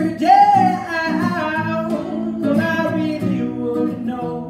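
A man singing with his own strummed acoustic guitar, in a raw solo acoustic performance.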